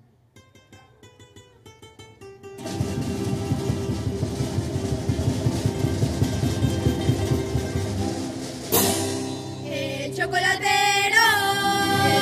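Comparsa classical guitars play the introduction: a few soft picked notes, then from about two and a half seconds in, loud full strumming. A sharp hit comes near nine seconds in, and about ten seconds in a children's choir starts singing over the guitars.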